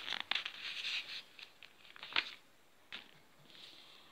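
Glossy paper catalogue pages being turned by hand: rustling in the first second, then a few light taps and crinkles as the page settles.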